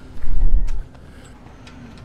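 Wind buffeting the camera microphone: a loud, low rumbling gust for under a second at the start, then a quieter outdoor background.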